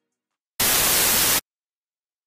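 A burst of static hiss, under a second long, that starts and cuts off suddenly.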